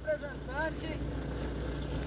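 Faint voices talking at a distance in the first second, over a steady low hum.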